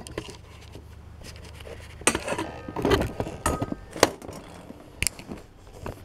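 Camera handling noise as the camera is set down and repositioned: scattered knocks, clicks and rustles, with about five sharper ones between two and five seconds in, over a low hum at the start.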